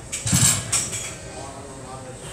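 Metal gym weights clanking together: a short cluster of clinks and knocks in the first second, over the steady hubbub of the gym.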